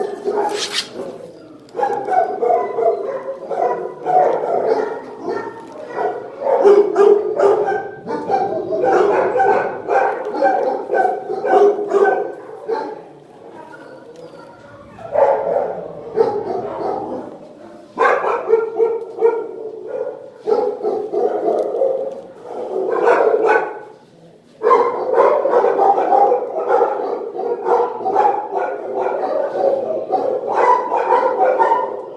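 Several dogs barking in shelter kennels, overlapping almost without a break, easing off briefly about 13 seconds in and again about 24 seconds in.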